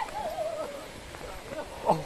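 A person's voice making a drawn-out, wavering hoot-like call, with a louder burst of voice near the end.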